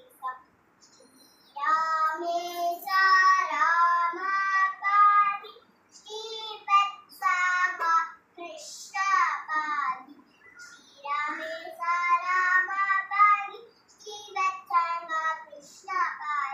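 A young girl singing alone with no accompaniment, in Carnatic style in the raga Mayamalavagowla. She sings short phrases broken by brief pauses.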